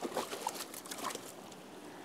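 Shallow stream water splashing as a hooked salmon is grabbed by hand: a few short splashes in the first second or so, then the steady trickle of the stream.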